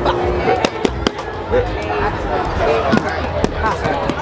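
Crowd chatter from many overlapping voices, with a few sharp clicks cutting through, one just after half a second in and another about a second in.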